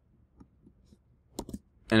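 Two quick, sharp clicks from the computer being worked, about one and a half seconds in, after a few fainter ticks, as a shortcode is pasted into the page editor. A man's voice begins right at the end.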